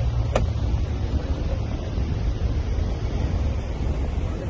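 Steady low rumble of wind buffeting the microphone over vehicle road noise while driving, with one brief, sharp rising chirp just after the start.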